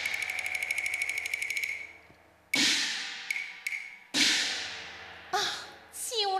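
Cantonese opera percussion playing between spoken lines. A fast, even roll of strikes over a ringing tone lasts about a second and a half. Then come three single strikes, each ringing and dying away, with two light taps between the first two.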